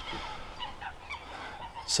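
Wetland birds calling in the background, with many short calls scattered through the moment.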